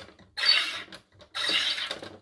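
SodaStream carbonator forcing CO2 into a bottle of water in two bursts of about half a second each, a second apart, as the repaired, wire-reinforced release lever is pressed.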